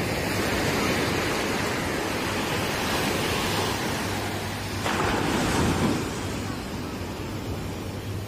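Sea surf washing up a beach, a steady rush of breaking waves, with a louder wave breaking about five seconds in.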